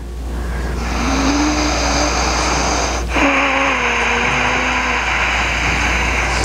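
A motor vehicle engine running with a steady note. The note breaks off briefly about three seconds in, over a constant low hum.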